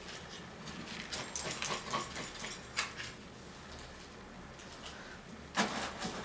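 Clay tanjia jars being handled and set down in hot ashes: scattered light clinks and scrapes, with a louder knock near the end.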